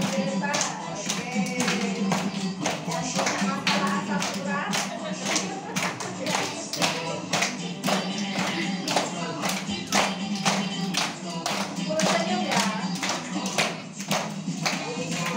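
A group of adults and children clapping their hands in a steady beat along with a song that has singing voices.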